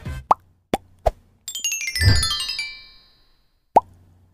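Logo sting sound effects. Three quick upward-bending pops are followed by a shower of falling, chime-like tones over a soft low thud, and a last pop comes just before the end.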